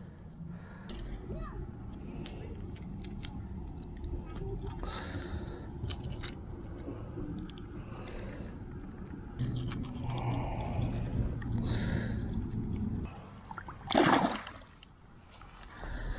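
Rustling and small clicks from handling a just-landed bass and fishing gear on a pond bank over a steady low rumble on the microphone, with one short loud splash-like burst about fourteen seconds in.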